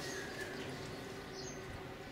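Polar bear cub suckling from its mother, giving the low, rapidly pulsing hum that nursing bear cubs make, with a few faint high chirps over it.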